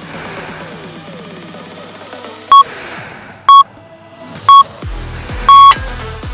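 Workout interval timer's countdown beeps over electronic dance music: three short beeps a second apart, then a longer final beep as the countdown reaches zero and the exercise interval ends. The beeps are the loudest sound; heavy bass comes into the music just before the last beep.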